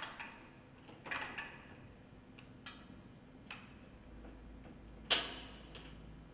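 Steel rigging hardware of d&b line array loudspeakers clicking as the boxes' front links are handled and set into place: a few light metallic clicks, then a louder clank about five seconds in.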